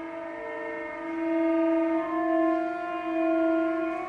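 Solo cello played with a curved bow, sounding sustained chords of several notes at once that swell in loudness, with the upper notes shifting about two seconds in.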